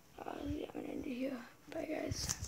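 A boy talking in short stretches, his words not made out.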